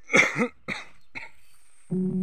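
A person coughing three times in quick succession, the first cough the loudest. Music comes in just before the end.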